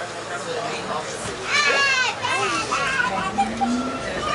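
A high-pitched child's voice and passenger chatter, loudest from about one and a half to three seconds in, over the steady running noise of a Westinghouse R68 subway car.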